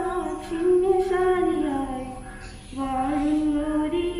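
A woman singing solo and unaccompanied into a microphone, a slow melody of long held notes that step up and down, with a short break between phrases a little past halfway.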